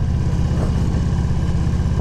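Victory motorcycle's V-twin engine running steadily in second gear while riding slowly, heard from the rider's seat with a rapid even pulse to its low note.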